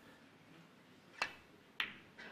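Two sharp clicks of snooker balls about half a second apart, a little over a second in: the cue tip striking the cue ball, then the cue ball striking an object ball near the pack, over a hushed arena.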